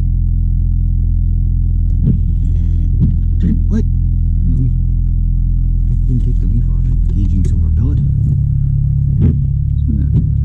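Honda Civic's four-cylinder engine idling, heard from inside the cabin as a steady low hum. About eight seconds in its note shifts as the automatic is put into gear.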